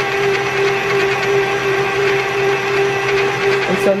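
Electric stand mixer running at a steady speed, its beater creaming cream cheese in a stainless steel bowl: an even motor hum on one held pitch.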